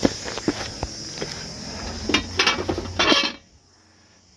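Footsteps on a walkway and porch steps over a steady chirring of crickets. About two seconds in comes a run of louder rustling, clattering noises. Near the end all sound cuts out abruptly.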